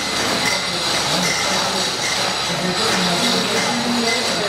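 Manual chain hoist being worked, its steel chain rattling and clinking steadily as the boat hull is raised.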